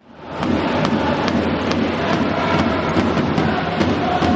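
Large stadium crowd of football supporters cheering and chanting, a dense steady roar that swells in suddenly, with scattered sharp hits through it.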